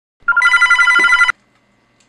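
Desk telephone bell ringing once: a fast metallic trill lasting about a second that cuts off suddenly as the call is picked up.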